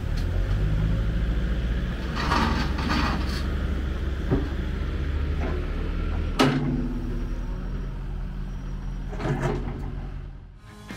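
Caterpillar 308CR compact excavator's Tier 4 diesel engine running steadily while the boom, bucket and thumb are worked, with rushes of noise from the machine. A sharp metal clank about six and a half seconds in is the loudest sound, after which the engine note shifts; a smaller knock comes about four seconds in.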